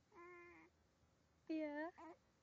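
A baby of about four months cooing: two short vocal sounds, the first held on one pitch, the second louder, dipping and then rising in pitch.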